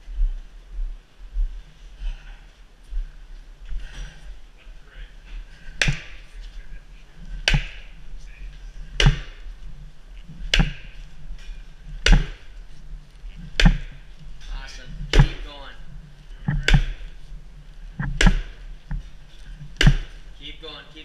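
Sledgehammer blows on the steel beam of a Keiser sled forcible-entry simulator, driving the beam along its track. About ten hard strikes start about six seconds in, evenly spaced roughly a second and a half apart, each with a short metallic ring.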